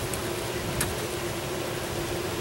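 Steady background noise with a constant low hum, and one or two faint short clicks.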